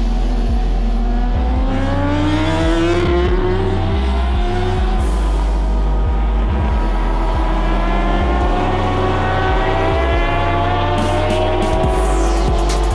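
Racing motorcycle engine at high revs, its pitch climbing as the bike accelerates, then dipping and climbing slowly again. A heavy, rhythmic bass beat from background music runs underneath.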